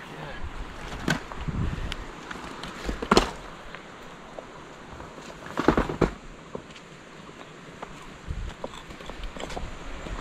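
Off-road vehicle creeping along a rough, rocky dirt track, a steady low rumble broken by a few sharp knocks and bumps about one, three and six seconds in.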